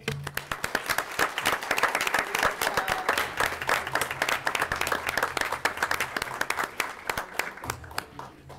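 An audience applauding, many hands clapping at once; the applause stops shortly before the end.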